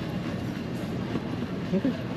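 Airport concourse noise: a steady rolling rumble with faint voices around it. A nearby voice says "okay" near the end.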